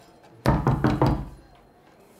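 Knocking on a door: a quick run of about four loud knocks starting about half a second in, dying away briefly in the room.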